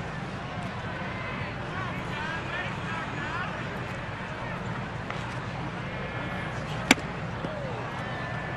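Ballpark crowd murmur with scattered voices over a steady low hum, then, about seven seconds in, one sharp pop as a 93 mph fastball smacks into the catcher's mitt on a swing and miss.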